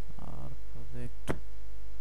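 Steady low electrical mains hum in the recording, with two short wordless vocal sounds in the first second and a single sharp click just after.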